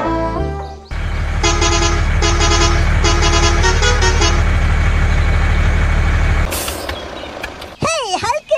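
Truck engine sound effect running steadily, with a series of horn honks over it; the engine cuts off about six and a half seconds in, followed by a short hiss.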